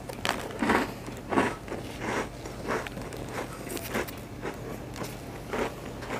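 A person chewing a mouthful of cake rusk close to the microphone: a soft crunch with each chew, in a regular run of a little under two chews a second.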